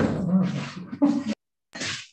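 A man laughing over a video-call connection: a voiced laugh for a little over a second, then a short breathy burst of laughter near the end.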